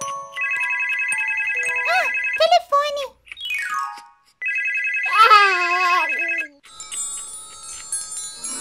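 Electronic Jack-Jack baby doll playing its sound effects: a fast, pulsing electronic trill that rings twice for about two seconds each time, with high baby-voice babbles over it and a falling glide between the two. Chiming tones follow near the end.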